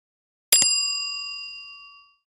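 A click sound effect about half a second in, then a bright bell ding that rings on and fades away over about a second and a half: the notification-bell sound effect of a subscribe-button animation.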